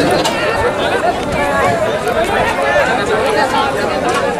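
A crowd chattering: many voices talking at once, with no single speaker standing out.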